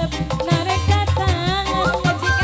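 Dangdut music from a street procession band: a steady, loud drum beat under a wavering melody line.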